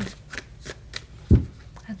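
A tarot deck being shuffled by hand: a few light card snaps, then one dull, louder thump about two-thirds of the way through.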